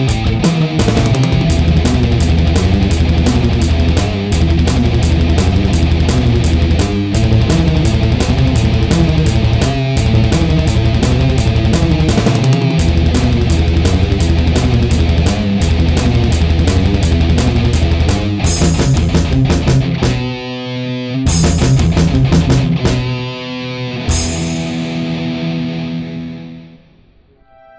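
Instrumental thrash metal: distorted electric guitars riff over fast drumming. About 18 s in, the band breaks into stop-start chord hits with cymbal crashes, separated by short gaps, and ends on a ringing chord that fades near the end.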